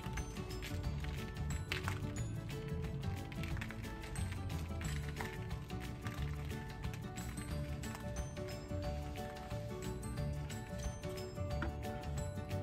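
Background music with held notes over a busy low end.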